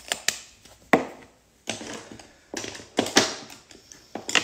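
Makeup products and packaging being handled on a tabletop: a string of sharp clicks and knocks with short stretches of rustling, the loudest knocks about a second in and around three seconds.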